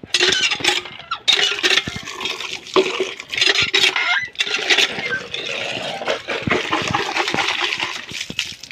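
Water gushing from the spout of a cast-iron hand pump and splashing onto a concrete slab as the handle is worked, surging unevenly, with occasional sharp knocks.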